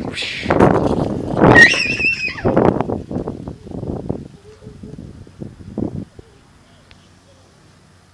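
A toddler's high-pitched excited squeal among shrieks and noisy movement, loud in the first few seconds, then dying away to faint outdoor background.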